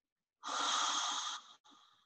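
A woman's deep breath close to the microphone, about a second long, followed by a shorter, quieter breath.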